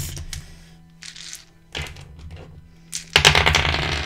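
A handful of dice shaken in cupped hands: a couple of soft clicks early, then a loud dense rattle about three seconds in that runs on past the end.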